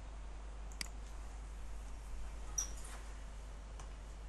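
A few sharp computer-mouse clicks, one about a second in, a couple near three seconds and one just before the end, over a steady low electrical hum from the recording setup.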